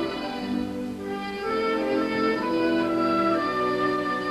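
Orchestral background music: strings play sustained notes that move from pitch to pitch every half-second or so.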